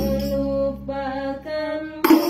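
Women's voices singing long held notes, moving through a few pitches, with the frame drums silent.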